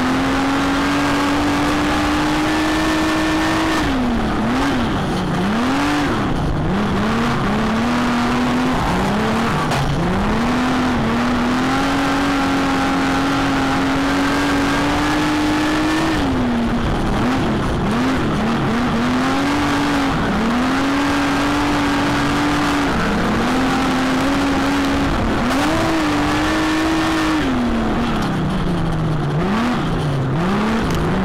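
Super stock speedway car's V8 engine heard from inside the cockpit while racing on a dirt track. It holds high and steady down the straights, then drops and wavers up and down several times through each corner as the throttle is lifted and picked up again, before climbing back for the next straight.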